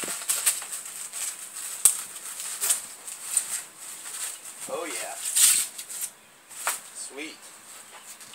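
Clear plastic wrapping on bow staves being cut and pulled open by hand: irregular crinkling and crackling, with sharp snaps of the plastic.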